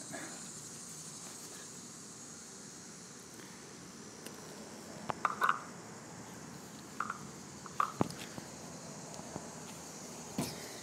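Soft handling and rubbing sounds from a microfiber cloth working metal polish onto a steel exhaust tip. There are a few brief scuffs and a sharp click between about five and eight seconds in, over a steady faint high hiss.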